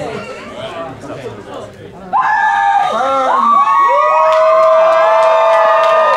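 Audience chatter, then about two seconds in the crowd breaks into loud cheering and long whoops, with some clapping.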